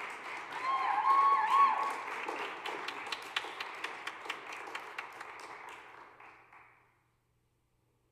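Audience applauding, swelling over the first two seconds with a brief wavering cheer from one voice, then thinning to scattered separate claps and dying away about seven seconds in.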